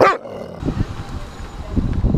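A dog gives a single short bark right at the start, close to the microphone.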